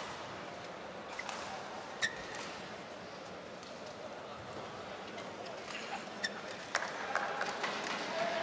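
Badminton arena ambience: a steady crowd murmur, broken by a few sharp clicks of play on court, with a stronger one about two seconds in and several more near the end.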